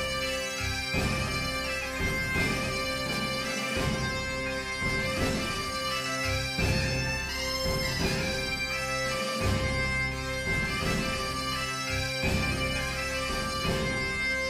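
Background music on a reed wind instrument, with a melody played over a steady held drone note.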